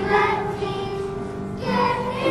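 A children's vocal ensemble singing a song together, with piano accompaniment.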